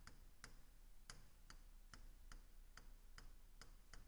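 Faint, sharp ticks of a pen tapping on a touchscreen as words are handwritten, about two to three a second at uneven spacing.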